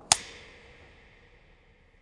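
A film clapperboard snapped shut once: a single sharp clap with an echo that fades away over about a second.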